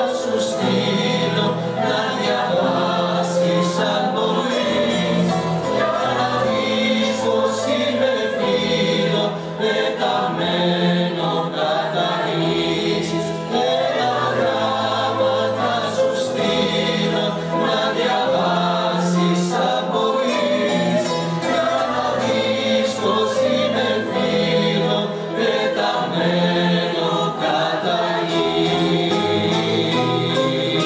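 Mixed choir singing a Greek popular song, accompanied by piano, cello and bouzoukis.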